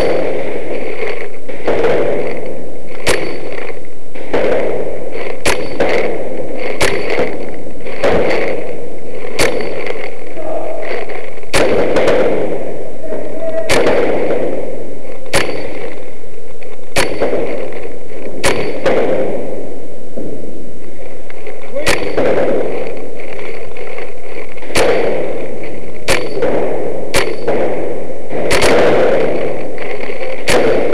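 Paintball markers firing: single sharp shots at irregular intervals, roughly one every second or two, over loud continuous background noise.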